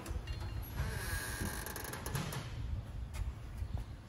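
Steel tool box locker door being swung open and the metal drawers inside handled, giving low mechanical handling noise and sliding metal.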